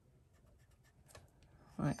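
Faint scratching of a pencil shading on card in short strokes.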